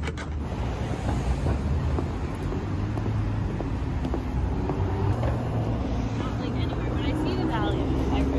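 City street traffic: a steady low rumble of passing cars, with passers-by talking briefly near the end.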